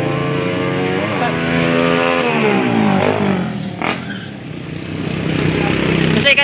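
Motorcycle passing by on the road: its engine note jumps up about a second in, then falls and fades as it moves away. A brief sharp noise follows near the four-second mark.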